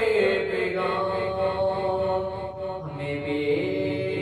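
A man singing an Urdu kalaam (devotional Sufi poem) solo, in long held notes that slide slowly in pitch.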